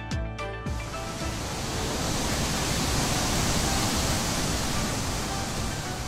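A long hissing sound effect comes in about a second in, swells and then eases off, laid over background music.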